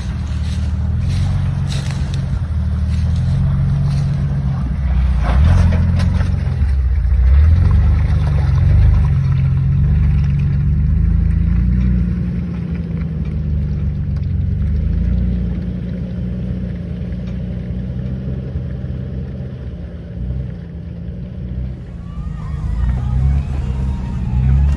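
Lifted Jeep Wrangler TJ's engine running at low revs while crawling a rutted dirt trail, its pitch drifting up and down with the throttle. A few sharp clicks sound in the first couple of seconds.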